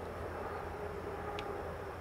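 Quiet outdoor background with a steady low rumble and one faint tick about one and a half seconds in, while a carbine is held aimed just before firing.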